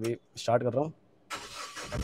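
Mahindra Bolero Camper's diesel engine being started with the key: the starter cranks from a little past halfway, and the engine catches near the end with a low rumble.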